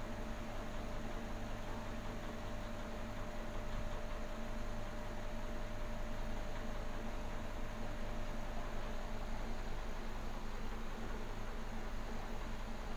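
Aquarium equipment running: a steady hum with a constant hiss, unchanging throughout.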